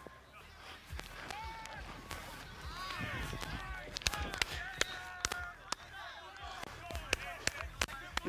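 Distant voices and shouts of players and coaches across a football practice field, with scattered short, sharp clicks and knocks.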